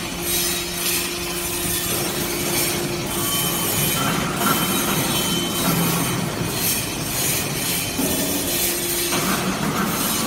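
Hydraulic briquetting press for metal chips running: a steady pump hum over loud mechanical noise, its tone changing about four seconds in and again about eight seconds in.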